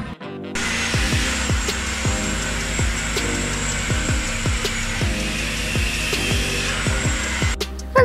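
Background music with a steady thumping beat over a steady rushing noise. It cuts in abruptly about half a second in and stops just before the end.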